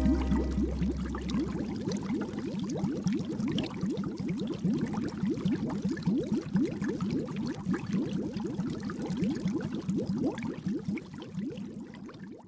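Cartoon bubbling sound effect: a rapid stream of short, rising bloops, fading away toward the end. The last low note of the outro jingle dies away in the first second or two.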